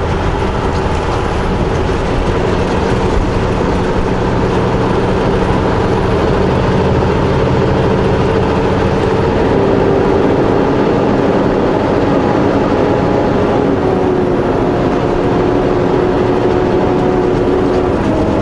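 Steady drone of a semi truck's diesel engine and road noise inside the cab while cruising at highway speed. The engine's pitch eases slightly lower past the middle.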